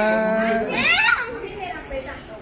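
A young child's high-pitched voice calling out twice in quick succession, the second call about a second in.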